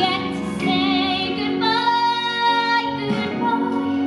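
A woman singing a slow solo song over instrumental accompaniment, holding long notes with vibrato.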